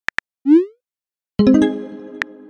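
Two quick simulated keyboard taps, then a short rising 'bloop' message-sent sound effect about half a second in. About a second and a half in, a short synthesized musical chord starts and rings out, fading slowly.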